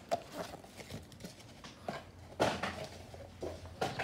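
Light handling noise of small plastic plant pots in card sleeves being picked up and cleared off a wooden table: scattered soft clicks, a louder brief rustle about two and a half seconds in, and a sharp click near the end.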